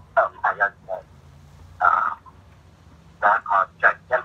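A person talking in short phrases separated by brief pauses.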